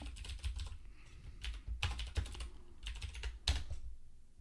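Typing on a computer keyboard: short runs of keystroke clicks with brief pauses between them, as a short terminal command is typed out.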